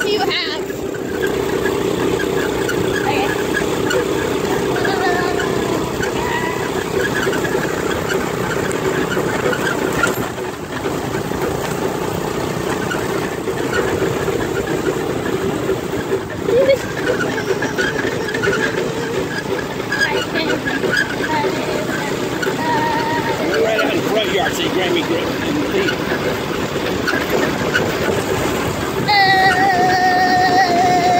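Go-kart's small petrol engine running steadily as the kart drives along, with road noise from rough ground.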